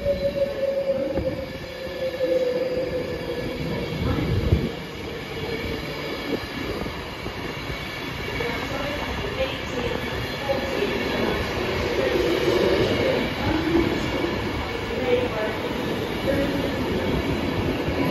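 Class 390 Pendolino electric train running slowly past at the platform as it arrives: a rumble of wheels on rail with a whine that falls slowly in pitch over the first several seconds, and scattered higher tones later as it slows.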